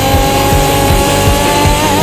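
Rock music soundtrack: a long held note that wavers near the end, over a steady drum beat.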